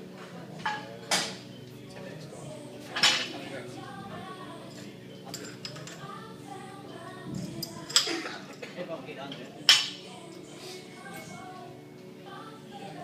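Metal clanks and clinks of a barbell's plates and sleeve being handled as weight plates are changed on the bar: about five sharp knocks, the loudest about three seconds in and near the tenth second.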